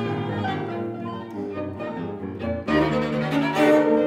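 A piano trio playing classical chamber music: violin and cello with fortepiano (a McNulty copy of a c. 1810 Conrad Graf instrument), with sustained bowed string lines. The music dips briefly and then swells louder about two-thirds of the way through.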